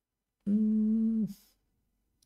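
A man's short closed-mouth hum, one steady, level note held for under a second, ending in a brief hiss of breath.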